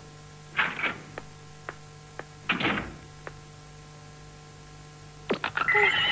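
Cartoon sound effects over a faint steady hum: a few soft clicks and two short noisy swishes, then near the end a cluster of sharp clicks and the start of a bright, shimmering sparkle chime, the magic-wand effect of a transformation.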